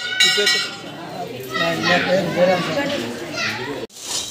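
Children's voices and people talking and calling over one another, with a bell ringing briefly in the first half-second. The sound cuts off abruptly just before the end.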